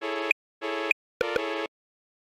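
Three short synthesizer chords built in fourths, each a steady beep about a third to half a second long, separated by silent gaps; the last is the longest.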